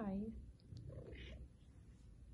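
A drawn-out voice falling in pitch cuts off about a third of a second in. After it comes faint, soft rustling with a few light ticks from young Bengal kittens crawling on a fleece blanket.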